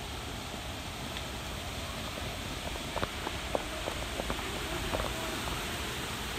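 Steady outdoor background hiss, with a few faint light clicks and brief faint distant voices in the second half; no distinct loud event.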